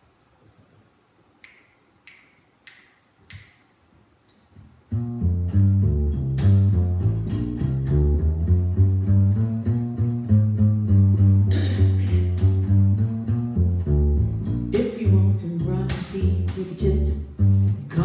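Four sharp finger snaps counting in the tempo. About five seconds in, a plucked double bass walking line starts, with a woman singing a jazz vocal over it.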